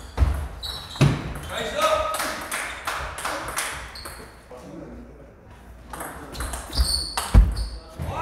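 Table tennis balls clicking off paddles and tables in a large hall, at irregular intervals with more than one table in play. A heavy thump about seven seconds in is the loudest sound.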